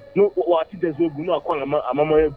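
Speech only: a radio studio conversation between presenters.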